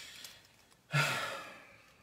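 A man's breath during a pause in speech: the end of an intake of breath, then about a second in a sigh with a brief voiced start, trailing off into a breathy exhale that fades away.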